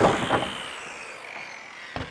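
Circular saw finishing a cut through framing lumber, then its blade spinning down with a falling whine that fades away. A short knock near the end.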